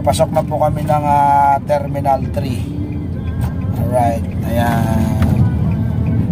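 Steady low rumble of engine and tyre noise inside a moving car's cabin. A voice with long held pitches, like singing, sounds over it for the first two seconds and again about four seconds in.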